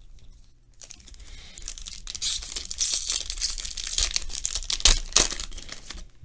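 Foil wrapper of a trading-card pack being torn open and crinkled by hand: a dense crackle that starts about a second in, with a couple of louder rips near the end.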